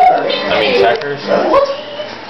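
A person imitating a dog, making high, wavering vocal noises.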